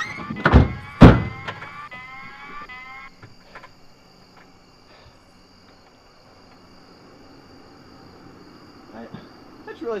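Two car doors slam shut in quick succession, about half a second apart. Under them a repeating rising electronic whoop, most likely an alarm, sounds until it stops about three seconds in.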